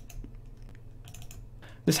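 A few light computer mouse clicks over a low background hum: a single click at the start and a quick cluster of clicks about a second in, as the launcher icon is clicked open.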